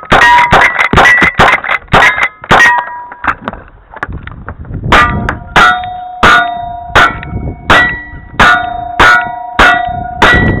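Gunshots from a lever-action rifle in quick succession, each hit answered by the ringing clang of a steel target. After a short lull, single-action revolvers fire a string of shots about two-thirds of a second apart, and each hit rings on the steel plates.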